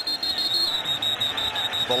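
Stadium crowd noise, with a steady high-pitched tone held over it.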